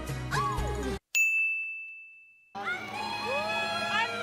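Dance music cuts off abruptly about a second in, followed by a single bright bell-like ding, an edit sound effect, that rings and fades over about a second and a half. Then a crowd's high-pitched calling and cheering starts.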